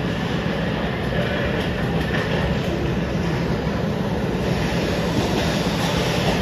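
Ice hockey play in an arena: a steady low rumble of rink noise, with skates on the ice and a few faint clacks from sticks and puck.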